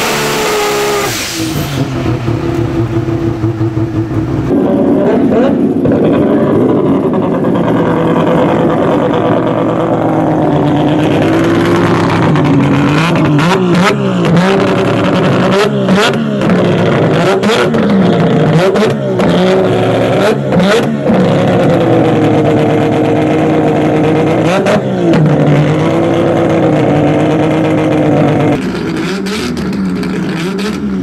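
Triple-rotor 20B rotary engine of a drag car idling loudly with a lumpy idle, its pitch wavering up and down, with a few sharp pops in the middle.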